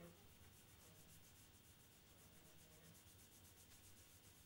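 Faint, quick back-and-forth rubbing of a tissue over the painted surface of a carved model plane, burnishing shaved pencil graphite into a panel to give it a metallic finish.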